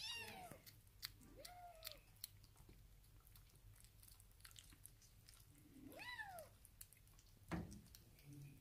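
Young kittens mewing faintly, three short high calls that each rise and fall in pitch, over faint small clicks, with a thump near the end.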